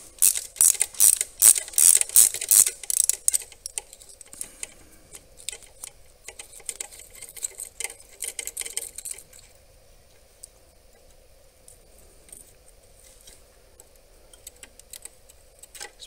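Socket ratchet clicking in quick repeated strokes as a freshly loosened glow plug is backed out of a VW ALH TDI diesel's cylinder head. The clicks are loud for the first few seconds, turn to fainter ticking, and die away after about nine seconds.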